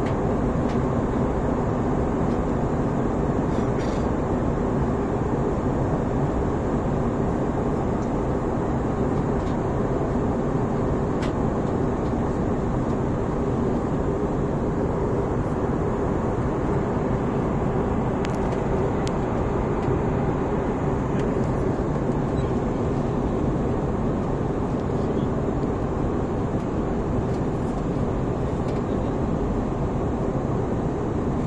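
Steady jet airliner cabin noise in cruise flight: the engines and the air rushing past the fuselage make an even drone with a low steady hum.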